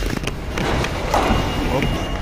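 Background noise of a factory loading hall: a steady low machinery hum with light clatter and faint voices in the distance.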